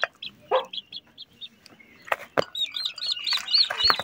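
Newly hatched Heavy Cochin and Polish chicks peeping, with scattered high peeps that build into a rapid run near the end. There is a short lower call about half a second in, and a couple of sharp taps a little after two seconds.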